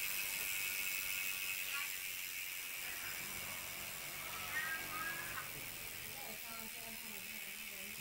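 Mountain bike's chain drivetrain turning as the crank is spun by hand, a faint running hiss that dies away after about three seconds. Faint voice in the background about halfway through.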